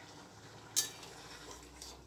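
A metal ladle clinking twice against a metal kadai, about a second apart, while a curry is stirred, over a low steady hum.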